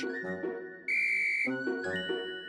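One short, steady blast on a small toy whistle, about half a second long and starting a little under a second in, over light cartoon background music.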